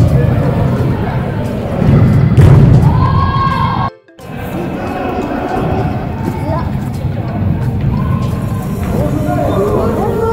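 Busy indoor sports-hall sound: voices and background music, with a few heavy thuds in the first few seconds. The sound drops out briefly about four seconds in, then the voices and music carry on more evenly.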